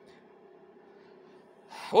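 Faint steady room hum, then a man's quick intake of breath near the end, leading straight into speech.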